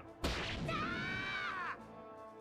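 Anime fight sound effects: a sudden swish about a quarter second in, followed by a held tone that rises and falls for about a second before fading.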